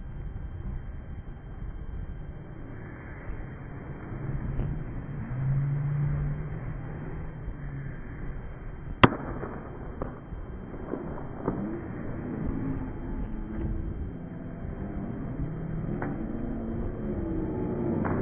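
Stadium crowd noise over a steady low rumble, with one sharp crack about halfway through that is the loudest sound. Crowd voices swell over the last few seconds as the 100 m sprinters leave the blocks.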